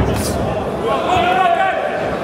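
A kick landing on a kickboxer with one sharp smack right at the start, followed about a second later by a voice calling out over the hall's background murmur.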